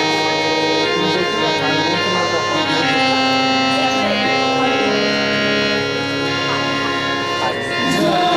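Harmonium playing a melodic introduction: held reed notes that step from pitch to pitch every half second or so, without tabla strokes.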